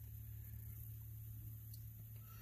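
Faint room tone inside a parked car's cabin: a steady low hum under a quiet background, with nothing else happening.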